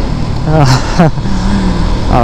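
A man's drawn-out voice from about half a second in, over the steady low rumble of a motorcycle being ridden, its engine and the wind on the microphone.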